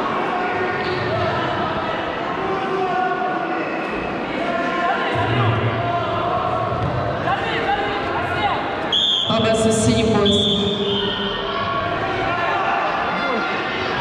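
Echoing sports-hall din of many overlapping voices shouting during a hand-to-hand fight, with dull thuds of feet and blows on the foam mats. The shouting peaks for a couple of seconds about nine seconds in.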